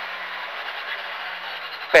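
Steady in-cabin noise of a Skoda rally car at speed on tarmac: engine, tyre and wind noise mixed in an even roar, with a low engine tone that sags slightly as the car slows.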